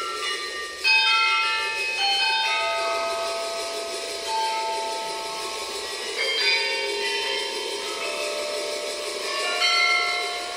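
Small tuned bells on a rack, struck one at a time with mallets in a slow, spaced line of about seven notes; each note rings on and overlaps the next.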